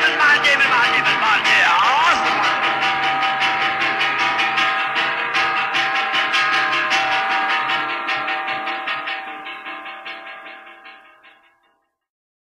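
Khmer oldies song ending: a sung line trails off in the first two seconds, then sustained instrumental chords over a steady beat fade out to silence near the end.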